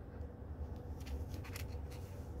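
Faint rustling and soft crackles as a skein of acrylic yarn and its paper label band are turned in the hand, over a low steady hum.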